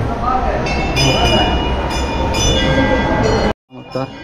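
Temple bells rung several times in a row, their high ringing tones overlapping, over a low rumble and faint people's voices. The sound cuts out suddenly near the end.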